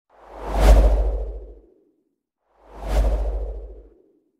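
Two whoosh sound effects, about two seconds apart, each swelling in quickly and fading away, with a deep low rumble under the rush.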